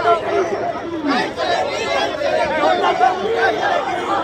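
A close-packed crowd of mostly male voices, many people talking and calling out over one another at once.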